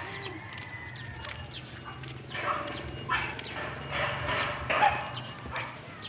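A dog barking several times in short bursts between about two and five seconds in, over a low steady hum.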